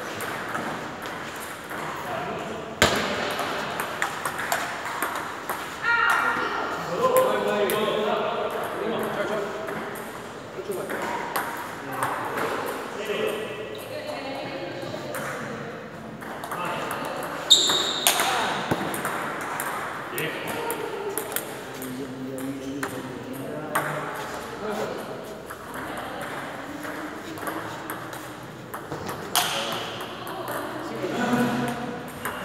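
Table tennis rally: the ball clicking off the paddles and the table in quick back-and-forth strokes, with a few sharper, louder hits.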